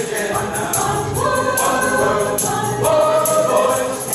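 Mixed choir of men's and women's voices singing, with a tambourine jingling in time.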